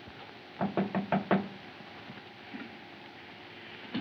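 A quick series of about five knocks on a door, loud and evenly spaced. A single faint click comes near the end.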